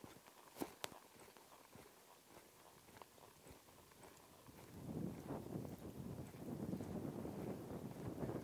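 Faint hoofbeats of a horse moving on soft arena dirt, with a couple of sharp clicks a little under a second in, and a louder dull scuffing noise from about halfway on as the horse passes closer.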